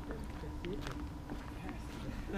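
Footsteps crunching over brick rubble and debris, with scattered short clicks and crunches, under faint murmured voices and a faint steady hum.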